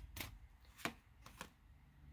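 Tarot deck being cut and cards drawn off the top by hand, giving three faint, sharp card clicks in the first second and a half.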